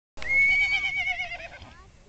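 A horse whinnying: one loud call that starts abruptly, quavers in pitch and fades away over about a second and a half.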